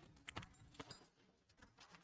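Bangles clinking faintly a few times in the first second as hands smooth cotton fabric.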